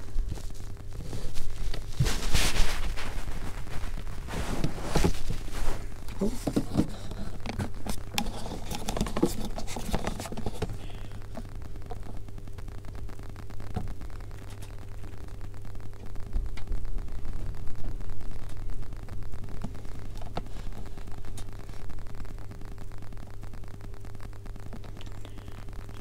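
Handling noise at a workbench: irregular scraping and rustling as things are moved about over a cloth, loudest about two seconds in and quieter after about ten seconds, with scattered light clicks. A steady low hum runs underneath.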